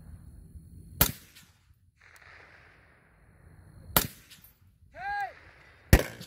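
Three rifle shots from a scoped precision rifle, about three seconds and then two seconds apart, each a sharp crack with a short echo.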